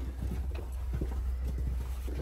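Footsteps of several people on a hard tunnel floor, irregular knocks several times a second, over a steady low rumble.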